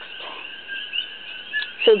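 Short rising chirps repeat a few times a second in the background, over a faint steady high tone. A word is spoken at the very end.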